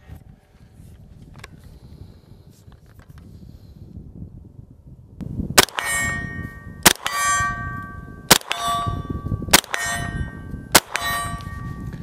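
Five shots from a 9mm CZ Scorpion EVO 3 S1 carbine, beginning about five and a half seconds in and fired roughly every second and a quarter. After each shot the hit AR-500 steel target rings out with a clang.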